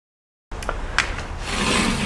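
Handling noise on a handheld camera's microphone: rubbing and scraping with a few sharp clicks over a low rumble. It begins suddenly about half a second in.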